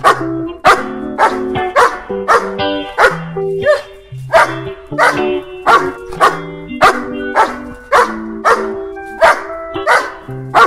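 An indie pop song with dog barks set over it in time with the music, a sharp bark roughly twice a second.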